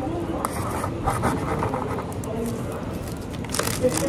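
Indistinct voices talking in the background, with light scraping and rustling noises and a few sharp clicks near the end.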